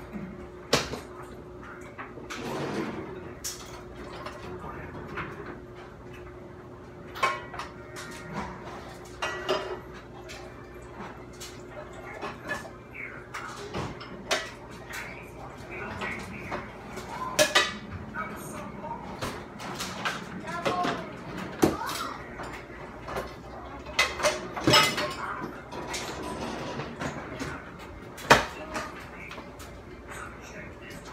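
Kitchen handling sounds: bowls and utensils clinking and clattering on a counter, with cupboard doors knocking, as scattered sharp clacks throughout. A steady low hum runs underneath.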